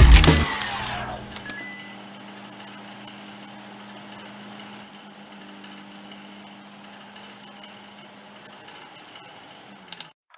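End of an animated channel intro's soundtrack: a loud burst of rapid mechanical knocks fades out within the first second, leaving a faint steady machine-like hum with a low tone for the rest.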